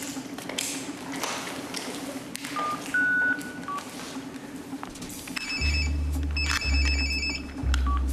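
A mobile phone's keypad beeps three short tones as a number is dialled. From about five and a half seconds in, a mobile phone rings with a trilling electronic ringtone in two bursts, over a deep pulsing buzz.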